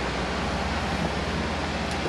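Construction-site engine machinery running: a steady low throbbing drone under an even hiss.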